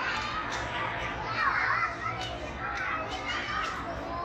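Children playing in an indoor playground: several high children's voices calling and chattering over one another, with a few light knocks of toys.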